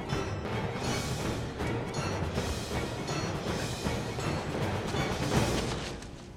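Orchestral film score playing a dense action cue with timpani hits, building to its loudest point near the end.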